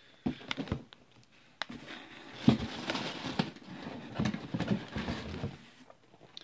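Groceries being handled in a cardboard box: a few sharp knocks, then rustling and knocking as items are moved about and one is pulled out.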